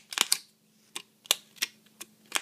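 Thin clear plastic of a cut bottle crackling as its petals are bent back by hand: about five sharp, separate clicks and snaps.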